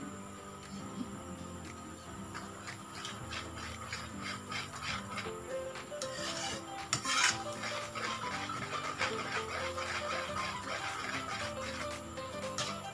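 Background music over a metal spatula scraping and stirring a thick, bubbling cassava and coconut-milk mixture in an aluminium wok. The scrapes come in repeated strokes, two to three a second, with the loudest about seven seconds in.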